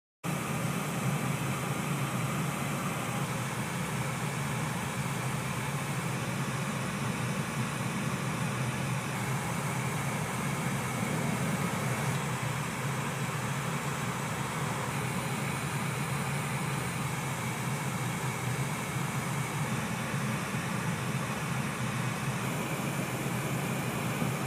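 Tank engines running at idle: a steady low rumble with a hiss over it.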